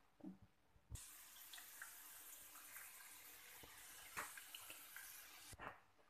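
Near silence: a faint steady hiss that starts suddenly about a second in and cuts off shortly before the end, with a few light clicks of a spoon against a ceramic bowl.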